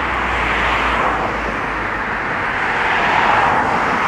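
Distant vehicle noise outdoors: a steady rushing hum with a low rumble, swelling slightly about a second in and again near the end.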